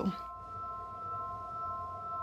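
Soft background music: a held drone of a few steady tones, with no beat.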